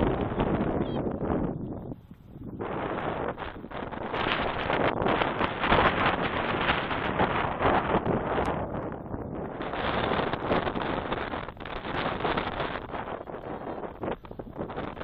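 Wind buffeting the microphone in gusts, a loud rushing that briefly drops away about two seconds in and again near nine seconds.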